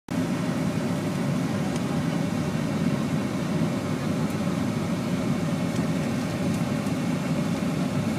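Steady engine and road noise heard from inside a moving vehicle's cabin while driving on a highway.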